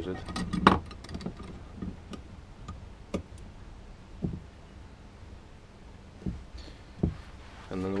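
Small cast-metal drill-press vice being screwed shut on a pebble: light metallic clicks and rattles from the turning screw handle, mostly in the first second or two, with a few dull knocks later on.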